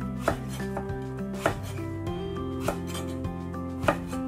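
Kitchen knife slicing through eggplant and knocking on a wooden cutting board: about four sharp cuts, roughly one a second, over background music.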